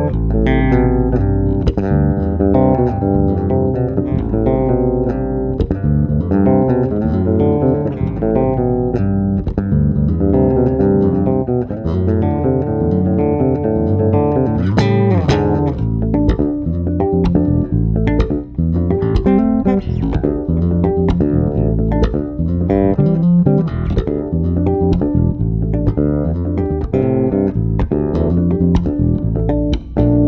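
Custom Paul Lairat Stega five-string electric bass played solo, plucked by hand, mixing chords and melodic lines over low notes. From about halfway through, sharp percussive note attacks come more often.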